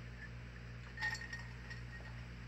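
Quiet room with a steady low hum. About a second in comes a faint, light clink with a brief ringing tail.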